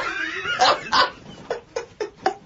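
Men laughing hard in a radio studio: a string of short, breathy bursts of laughter that fade away.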